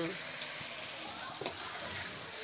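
Potato and aubergine pieces sizzling steadily as they fry in a wok on a gas stove.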